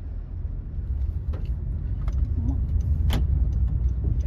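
Low in-cabin rumble of a manual-transmission car's engine and tyres as it pulls away in first gear, growing louder as it picks up speed, with a sharp click about three seconds in.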